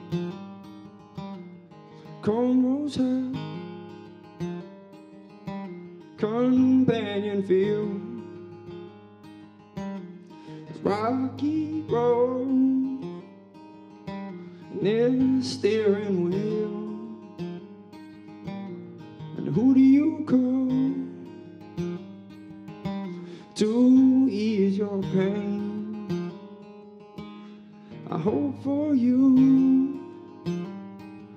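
Acoustic guitar strummed steadily under a man singing, his sung phrases swelling about every four seconds.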